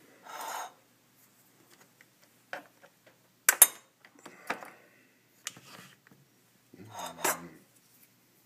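Stainless steel mesh tea strainer knocking and scraping against a ceramic mug as it is handled: a short rustle, then a series of sharp clinks, the loudest about three and a half seconds in, and another clatter near the end.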